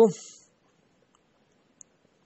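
A man's voice finishing a word, then near silence with one faint, short click near the end.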